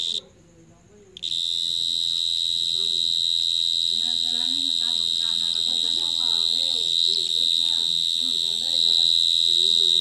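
A cricket calling from the mouth of its burrow in the ground: a loud, steady, high-pitched trill that stops just after the start and resumes about a second in, then runs on without a break.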